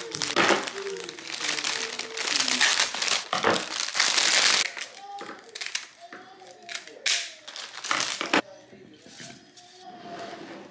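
Cellophane flower wrap crinkling and rustling as a bouquet of carnations is unwrapped and handled, loudest in the first half. Later come a few sharp snips of kitchen shears cutting through the flower stems.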